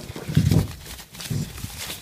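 Plastic bag wrapped around a dome security camera crinkling as the camera is handled, with a couple of dull knocks.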